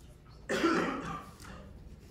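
A person coughing once, about half a second in, a short burst of under a second.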